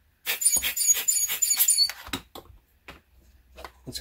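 A rubber air-blower bulb squeezed in a quick run of puffs over about a second and a half, each a short hiss of air with a thin squeaky whistle, blowing dust off a telescope finder's lens. A few light clicks of handling follow.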